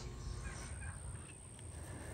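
A few faint chirps from young crested chickens, about half a second in, over low background noise.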